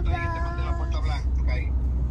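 Steady low rumble of a car driving, heard inside the cabin, under a person's voice that holds one drawn-out sound for about the first second and then breaks into short fragments.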